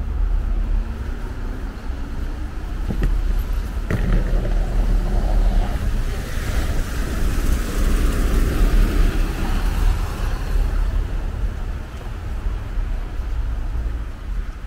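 Street traffic on a wet, slushy road over a steady low rumble, with one vehicle passing close by in the middle, swelling and then fading. Two short knocks come at about three and four seconds in.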